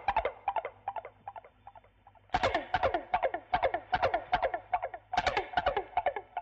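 Music: three bursts of rapid, sharply struck notes, each note dipping quickly in pitch, with short quieter gaps between the bursts.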